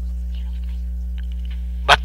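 A steady low hum, unchanging in level, with a voice starting right at the end.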